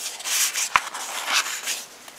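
Pages of a glossy album photobook being turned: stiff paper sliding and rubbing in quick swishes, with one sharp click about three-quarters of a second in.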